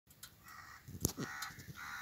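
Faint bird calls, three short ones, with a sharp click about a second in.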